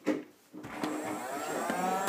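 A steady motor-like hum starting about half a second in, rising a little in pitch at first and then holding.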